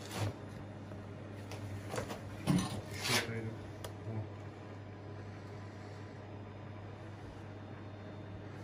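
A low steady hum with the CNC router switched off, its spindle no longer cutting. A few short knocks and rustles come in the first four seconds.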